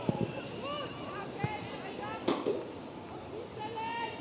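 Pitch-side sound of a women's football match: players' voices calling out over a low crowd murmur, with a few sharp thuds of the ball being kicked, the loudest about two seconds in.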